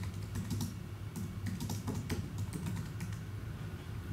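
Typing on a computer keyboard: a run of quick, uneven key clicks as a password of a dozen or more characters is typed in.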